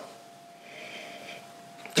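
A soft, drawn-out sniff through the nose as a man smells a glass of ale, from about half a second in to about a second and a half.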